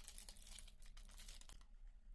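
Faint crinkling and tearing of plastic wrap being peeled off a false-eyelash box, a run of quick crackles that stops about one and a half seconds in.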